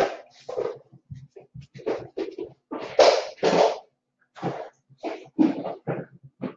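A small pet dog snuffling and sniffing in short, irregular puffs.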